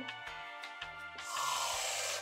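Background music with a steady beat, and about a second and a half in a hiss from an aerosol can of whipped cream spraying into a mouth.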